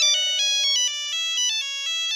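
Smartphone ringtone for an incoming call: an electronic melody of quick, stepping notes.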